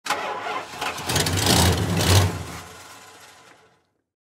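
A car engine starting and revving, loudest about two seconds in, then fading out.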